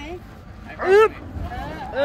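Speech: a short, rising vocal exclamation about a second in, and another voice beginning at the end, over a steady low rumble.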